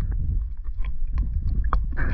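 Lake water sloshing and bubbling around a waterproof camera at or under the surface, with a steady low rumble and scattered small clicks.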